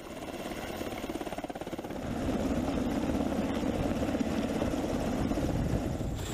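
Military helicopter hovering low, its rotor beating rapidly; the sound grows louder and steadier about two seconds in.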